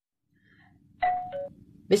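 A short two-note chime, the second note lower, like a doorbell's ding-dong, about a second in, over faint room hum.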